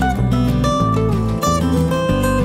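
Background music: strummed acoustic guitar playing chords at a steady level.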